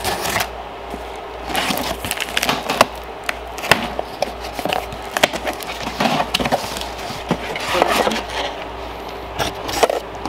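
Packing tape on a cardboard box being slit with a small blade and the box flaps pulled open: irregular scraping, tearing and crinkling of tape and cardboard, with scattered clicks and knocks.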